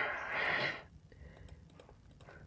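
A person's breathy exhale, a sigh-like huff in two swells lasting under a second, then a few faint clicks.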